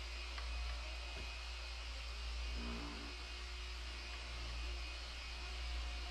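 Steady low electrical mains hum with a faint background hiss; no distinct wiping or spraying sounds stand out.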